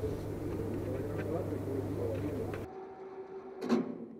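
Steady low engine hum from the rocket's rollout train, with voices wavering over it. About two-thirds of the way in the sound drops abruptly to a quieter background, and near the end there is one short, sharp noise.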